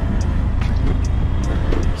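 Auto-rickshaw engine running with road noise, heard from inside the open cabin as it drives: a steady low rumble.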